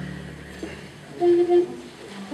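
Musicians tuning up on stage: a low steady drone, then two short held notes sounded about a second in, the loudest part.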